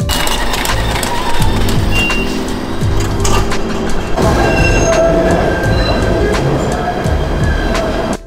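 PATH rapid-transit train running in an underground station, a loud rattling rumble with brief high squeals, laid over background music with a beat.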